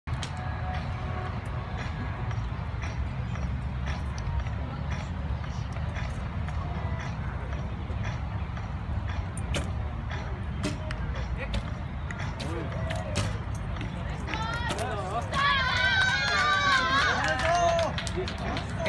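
Outdoor archery range sound: a steady low rumble with scattered sharp clicks. For the last few seconds a voice calls out loudly.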